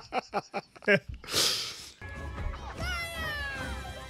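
Laughter trailing off in the first second, then film soundtrack audio: a short hissing whoosh, then a low rumble with music and several falling pitched sounds.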